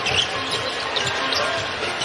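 A basketball being dribbled on a hardwood court, repeated low bounces every few tenths of a second, over steady arena crowd noise and music.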